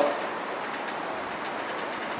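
Steady, even background hiss in a pause between spoken phrases, with no distinct events.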